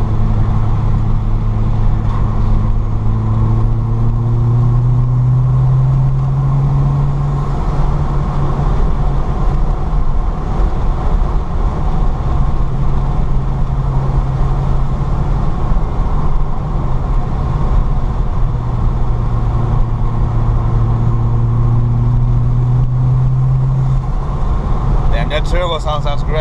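Peugeot 205's 2.0-litre turbo engine pulling on the road, heard from inside the open-top cabin, with wind and road noise underneath. The engine note climbs slowly for several seconds and falls back about eight seconds in. It holds steady, then climbs again and falls back near the end.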